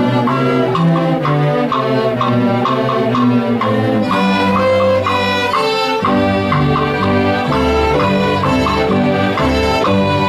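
Intermediate student string orchestra playing together: violins, violas, cellos and double basses bowing, with a quick repeated figure in the upper strings. Low bass notes come in strongly about four seconds in.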